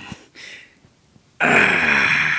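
A man's voice: a short breathy exhale, a brief pause, then about one and a half seconds in a loud, drawn-out wordless vocal sound that stays at one pitch rather than breaking into words.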